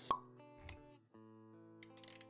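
Intro music with animation sound effects: a sharp pop just after the start, then held musical notes that break off briefly about a second in and come back, with a few quick clicks near the end.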